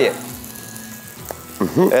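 Minced-meat patty (pljeskavica) sizzling steadily in hot oil in a frying pan, with a single click a little past halfway.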